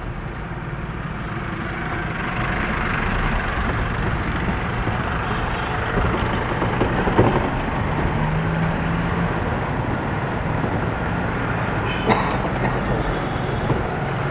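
Engine and road noise heard from inside a moving vehicle in city traffic, growing louder about two seconds in. A sharp knock comes about seven seconds in and a brief click near the end.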